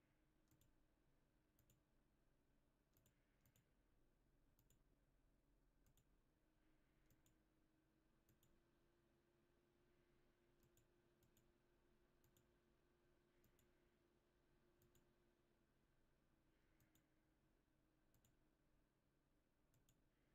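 Near silence: a faint steady hum with quiet, irregular clicks, roughly one a second, from a computer mouse clicking through pages.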